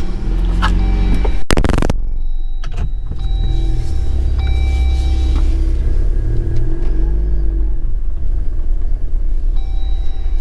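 Jeep Wrangler JL's engine running, heard from inside the cab: a steady low rumble, with one short, loud burst of noise about a second and a half in.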